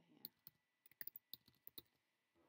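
Computer keyboard being typed on, about ten quick, light keystrokes as a word is typed out.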